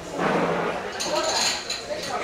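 China cups clinking, with voices and laughter over it.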